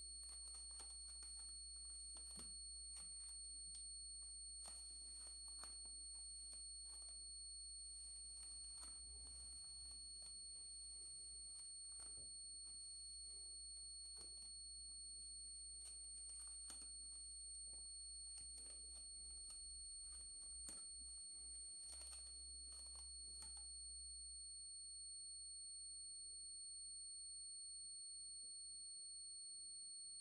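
Electro-acoustic improvisation: steady high-pitched electronic tones held throughout over a low hum, with scattered small clicks and crackles. The hum starts to flutter around the middle and thins out about 24 seconds in.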